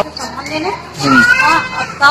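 Speech only: high-pitched voices of a woman and children talking.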